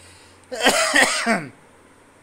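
A man coughs and clears his throat in one rough burst of about a second, starting about half a second in.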